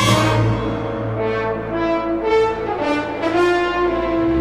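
Orchestral film score with brass, likely French horns, carrying a melodic phrase in a run of swelling notes over a held low bass note. The phrase enters loudly at the start.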